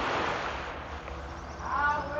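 Small waves washing on a sandy shore, swelling and easing. Near the end a short, wavering, cat-like call sounds over the surf.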